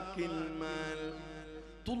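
Live Egyptian shaabi song heard through a PA: a long held note over steady accompaniment, then the singer's next phrase starts sharply near the end.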